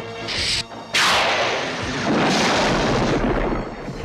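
Cartoon blast sound effect: a sudden loud rushing burst about a second in, lasting nearly three seconds, with a deep rumble in its second half, under background music.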